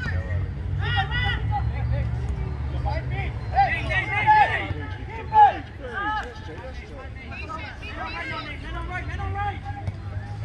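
Players and sideline onlookers shouting and calling out across an outdoor soccer field, in short distant calls with a louder shout about five and a half seconds in, over a steady low rumble.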